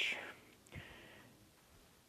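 A man's breathy, whisper-like exhale trailing off at the start, a fainter breath about a second in, then near silence.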